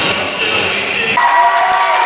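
A rock band with electric guitars and drum kit playing, cutting off suddenly about a second in, followed by audience cheering.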